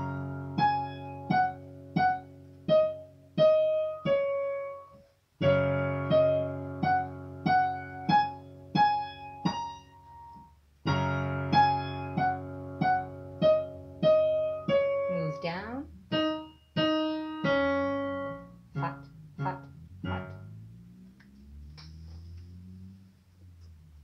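Digital piano playing a beginner's black-key exercise: a held low left-hand chord, struck again about every five and a half seconds, under a repeating right-hand pattern of single notes, about three notes every two seconds. In the last few seconds the notes move lower and die away.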